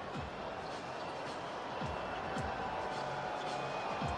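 A basketball being dribbled on a hardwood court, a handful of irregular bounces, over a steady bed of arena noise with faint music.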